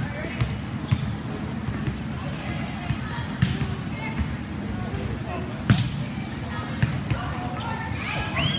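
Volleyball being struck and hitting the court floor in a sitting volleyball drill: a handful of sharp smacks spaced out over several seconds, the loudest about six seconds in, over a steady gym background with faint voices.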